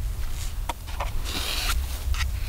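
Eating from a meal pouch with a spoon: a few small clicks and a brief crinkling scrape about one and a half seconds in, with chewing, over a low steady rumble.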